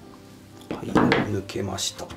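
Stiff metal hinge pin of a DOD Multi Kitchen Table's folding joint being pried out with a flat-blade screwdriver: a burst of metal scraping and clinking lasting about a second, starting a little under a second in.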